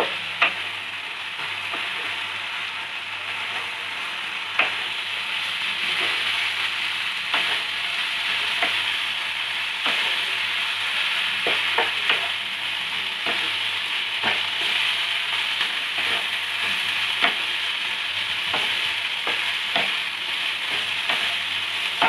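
Minced soya frying in oil in a non-stick pan, sizzling steadily while a wooden spatula stirs it, with irregular knocks of the spatula against the pan every second or so.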